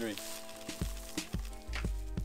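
Background music: steady held tones over deep bass beats and light percussive clicks.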